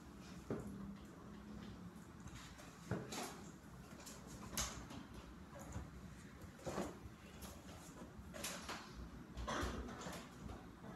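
Faint, scattered rustles and scratches of pen and paper at a desk as notes are written and paper sheets are handled, about half a dozen short sounds spread through the stretch.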